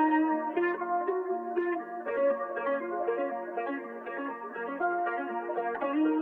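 Guitar type beat: plucked guitar notes picking out a melody in D-sharp minor at 120 bpm, with no bass or drums under it.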